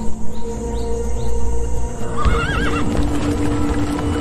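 Background music over which a horse whinnies once, about two seconds in, with a short wavering neigh lasting about half a second.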